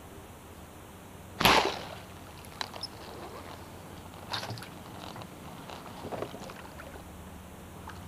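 A bowfishing bow fired once about one and a half seconds in: a single sharp snap of the string as the line-tethered arrow is loosed at a fish. A few faint knocks follow.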